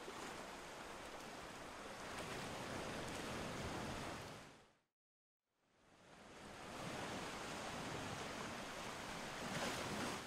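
Ocean surf: two long swells of washing wave noise, each rising and fading away over about five seconds, with a brief silence between them near the middle.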